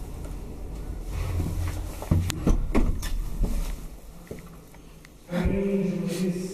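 1962 KONE traction elevator car travelling with a low rumble, then a cluster of clunks and clicks about two seconds in as the car comes to a stop.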